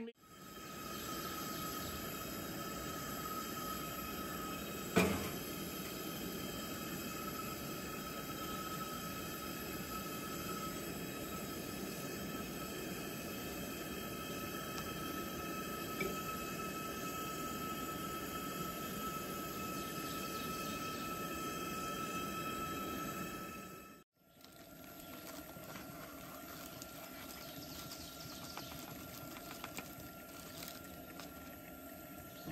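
Bacon sizzling steadily in a cast iron skillet over a propane-fed Coleman camp stove burner, with one sharp click about five seconds in. The sizzling breaks off near the end and a quieter, steady background follows.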